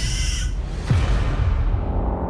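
Horror trailer sound design: a short, high bird-like creature cry in the first half-second, then a deep bass hit that falls in pitch about a second in, over a low rumble.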